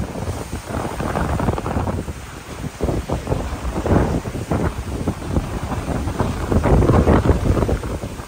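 Hurricane Helene's wind gusting hard across the microphone: a loud, rumbling buffet that rises and falls. It swells strongest about halfway through and again near the end.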